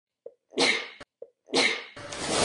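A woman sneezing twice into her elbow. Each sneeze is a sharp burst that fades over about half a second, preceded by a brief catch of breath.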